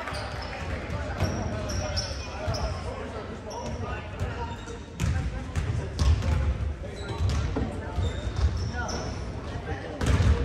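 Basketballs bouncing on a hardwood gym floor, a string of sharp knocks, with short high sneaker squeaks and chatter from players and spectators echoing in the hall. The bouncing and rumble grow busier about halfway through.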